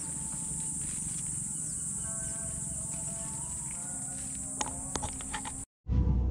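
Steady, high-pitched chirring of crickets in the evening, with faint, slowly drifting held notes of a distant melody underneath. A few small knocks come near the end, then the sound cuts out briefly.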